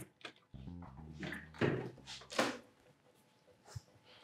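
Front door being unlocked and opened: small clicks from the key and lever handle, a low hum for about a second, then two knocks about a second and a half and two and a half seconds in.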